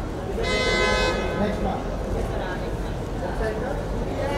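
Hubbub of a crowd of photographers' voices, with a single steady horn toot lasting under a second about half a second in.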